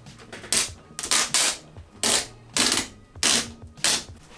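Adhesive black vinyl band being peeled off the painted cardboard body tube of a model rocket, in about seven short ripping pulls.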